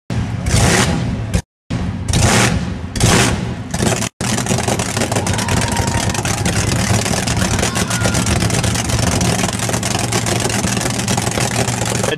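Flame-throwing Camaro drag-style engine through open zoomie headers: three loud revs in the first few seconds, then a steady loud rumble with a rapid pulse, broken twice by brief cuts.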